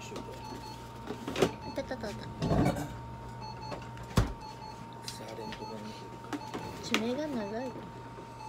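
Laser therapy unit giving a steady, faint high electronic tone while it runs, over a low hum. A few sharp handling clicks break through, and near the end there is a short wavering voice-like sound.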